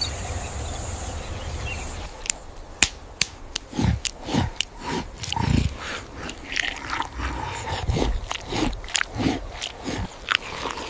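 An ape-like hominin eating, with sharp crunching bites and short, low, falling grunts. These begin about two seconds in, after a steady ambient hiss.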